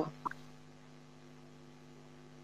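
Faint steady electrical hum from an open microphone line, after the last syllables of a voice in the first half-second.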